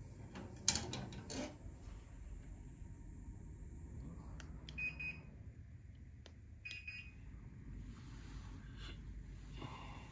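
Wooden clothes hangers clacking together on a metal rail in the first second and a half. Then two short electronic beeps a couple of seconds apart as buttons are pressed on an air-conditioner remote.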